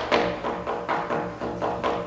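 Percussion ensemble playing: a quick, even run of struck drum hits, about five a second, over ringing pitched notes.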